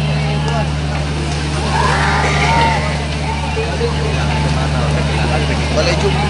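A steady low engine drone runs without change, under the talking and calling of a crowd of onlookers.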